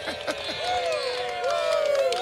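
Several voices singing together in a drawn-out sing-along chant, overlapping one another over crowd noise.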